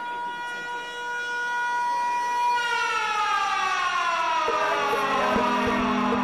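A siren-like sound effect: one pitched tone held steady for about two and a half seconds, then sliding slowly down in pitch. Music starts underneath it near the end.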